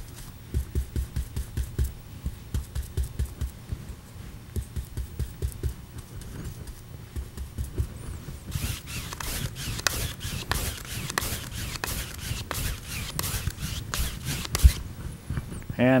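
Large paintbrush pressed hard into a wet-primed stretched canvas in up-and-down strokes, a quick run of soft thumps about four or five a second. Later comes a longer run of sharper, scratchier strokes.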